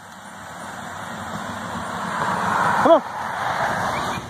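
Vehicle noise that swells steadily, loudest about three seconds in and then easing off, as of a vehicle passing.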